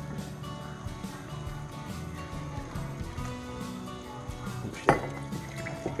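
Background music over boiling water being poured into a glass candle jar, with clinking of glass. There is a single sharp knock about five seconds in, as the pouring hand hits against something and spills.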